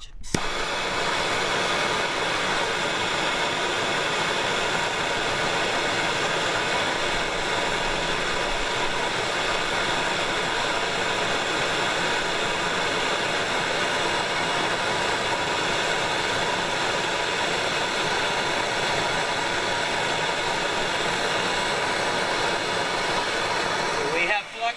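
Handheld MAP-Pro gas torch burning with a steady, loud hiss as its flame is held on an asphalt shingle for a timed open-flame burn test. It starts suddenly and stays even for over twenty seconds.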